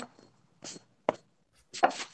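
Handling noise from a phone being moved during a video call: a brief rustle and a sharp click, then a short vocal sound near the end, with dead gaps between them.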